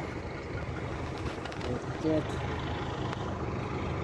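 Steady low hum of distant vehicle engines idling and running.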